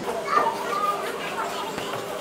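Indistinct children's voices, loudest in the first second, over a steady faint hum.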